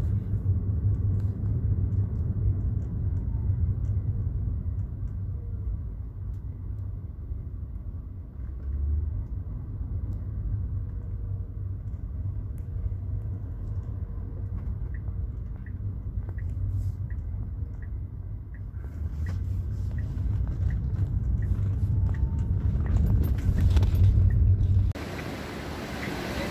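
Low, steady rumble of a car driving, heard from inside the cabin: engine and road noise. In the middle there is a faint, regular ticking about twice a second. Near the end the rumble cuts off abruptly to a lighter hiss.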